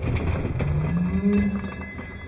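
Beyblade spinning top grinding around the plastic stadium wall: a low, groaning drone that rises slowly in pitch over a gritty scrape with fine ticks, fading toward the end.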